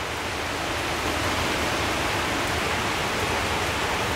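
Heavy rain pouring down steadily on a wooden deck and lawn, a sudden downpour; the hiss grows a little louder over the first second, then holds.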